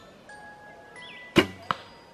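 Traditional bow being shot: a single sharp snap of the string as the arrow is released about a second and a half in, followed moments later by a smaller click. Light chiming background music runs underneath.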